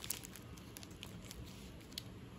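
A few faint, short crackles of plastic chocolate-bar wrappers being handled.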